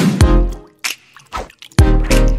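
Animated logo sting: short pitched hits that ring out briefly, with a quieter stretch in the middle and a loud hit near the end.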